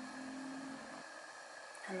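A woman's faint, drawn-out hum on one low note that stops about a second in, over quiet room hiss.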